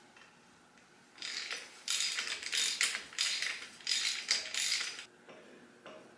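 Socket ratchet wrench run in a series of short strokes, about six bursts of pawl clicking roughly every half second, starting about a second in and stopping near the five-second mark: nuts being run down on the narrow front end's mounting.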